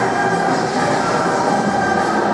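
Action-movie soundtrack: music mixed with continuous mechanical sound effects, played through loudspeakers into a large hall.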